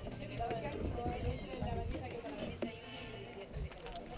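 Quiet background of distant voices and music.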